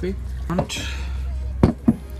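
A brief rushing noise, then two sharp knocks about a quarter second apart as a glass mason jar holding iced coffee is set down on a table.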